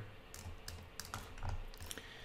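Faint, irregular clicks from a computer keyboard and mouse in use, about five light clicks over two seconds.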